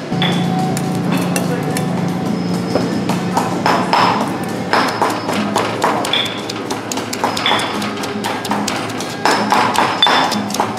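Stone pestle pounding sliced red chillies in a stone mortar: repeated knocks, stone on stone, with music playing under them.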